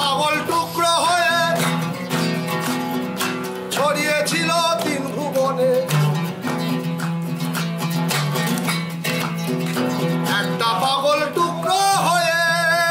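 Oud being plucked in a quick melodic line over a steady low drone, with a few short bending sung or ornamented phrases.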